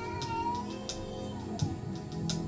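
Gospel church keyboard music: soft, held chords, with a high note that slides up and back down in the first second. Light cymbal taps fall about every two-thirds of a second.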